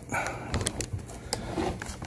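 Hand handling noise and scattered sharp plastic clicks as the threaded plastic spout collar of a plastic gas can is worked loose.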